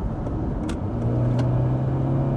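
Ford Mondeo's 2.0-litre turbocharged petrol engine (240 hp) revving hard under full-throttle kick-down, heard from inside the cabin, as the automatic gearbox drops two gears. From about a second in the engine note settles into a strong, steady drone that climbs slightly as the car accelerates.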